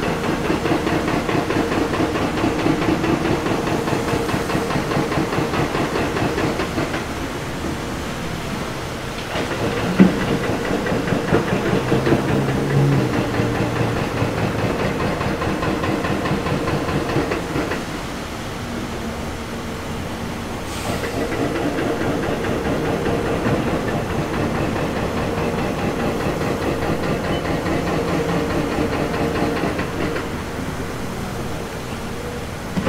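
Diesel engines of a Caterpillar 336 excavator and dump trucks running steadily at work, easing off twice, with a single sharp bang about ten seconds in.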